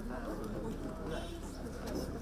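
Indistinct voices of people talking in the background, with a bird calling; a short high call stands out about a second in.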